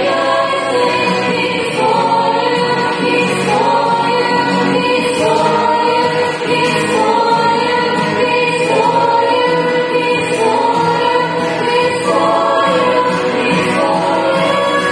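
A women's vocal group singing together, with an acoustic guitar accompanying them.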